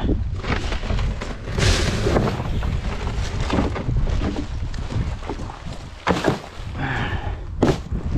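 Black plastic garbage bags rustling as they are handled inside plastic wheelie bins, over a steady rumble of wind on the microphone. Two sharp knocks against the bins near the end.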